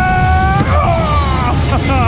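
Dodgem ride noise: a steady low rumble, with a long high-pitched shout that slides down in pitch about half a second in, and short falling cries near the end.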